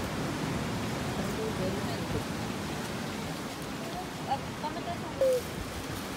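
Steady wash of ocean surf against a rocky shore, with a few faint, short bits of voices in the second half.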